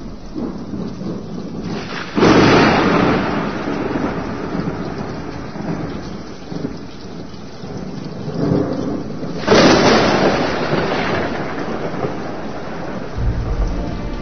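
Thunderstorm: steady rain with two loud claps of thunder, one about two seconds in and one about halfway through, each rumbling away over a few seconds.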